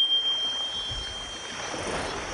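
Opening of a TV channel's logo sting: a single high chime rings and fades over a soft whooshing noise.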